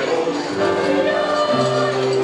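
Mixed choir singing held chords with keyboard accompaniment, the chord changing about half a second in and again near the end.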